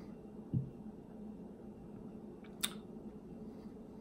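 Quiet room tone with two small mouth sounds from someone tasting a drink: a short soft one about half a second in, and a brief sharp click a little past halfway.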